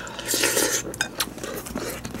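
Wooden spoon scraping through sticky rice and clinking against a glass bowl, with a few light, sharp clicks.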